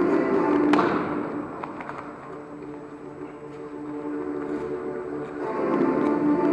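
Background music with sustained tones that fades down mid-way and swells back near the end. It is broken by one sharp thud a little under a second in.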